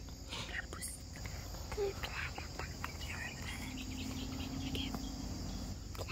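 Soft whispering and murmured voices over a steady high insect chirring.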